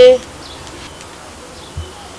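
A spoken word ends at the start, then a steady low background noise with no clear tone, and one soft low thump near the end.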